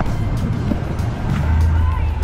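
A boat's engine running with a steady low hum that grows louder about two thirds of the way through, over scattered knocks and rumble from the moving boat.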